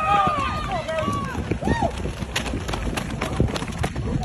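Spectators shouting and cheering during the race, then, about halfway through, a quick run of sharp footfalls as sprinters in spiked shoes pass close by on the track.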